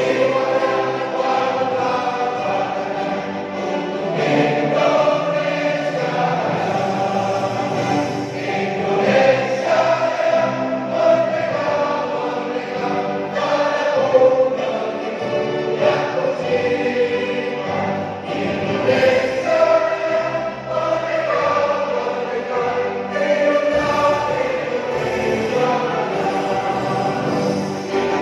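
A large group of people singing together in a hall, led by a conductor.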